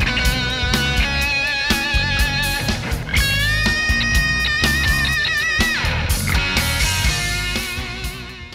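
Rock band playing, led by an electric guitar solo: quick melodic runs, then one long bent note held with vibrato from about three seconds in until nearly six, over drums and bass.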